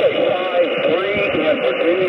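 A distant station's single-sideband voice coming through the speaker of a Xiegu G90 HF transceiver on the 15-meter band, weak and buried in a narrow band of static hiss. The signal is fading up and down with heavy QSB.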